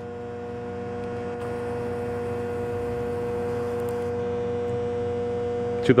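Steady electrical hum: one clear mid-pitched tone with fainter overtones over low room noise, growing slightly louder. A faint high hiss joins it for about three seconds in the middle.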